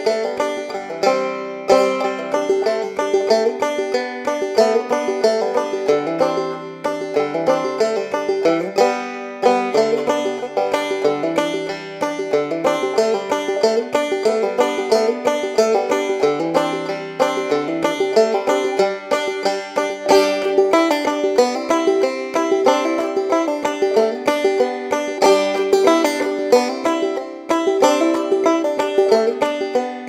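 Background music: a fast, busy tune of rapidly picked notes on a plucked string instrument in a bluegrass-country style.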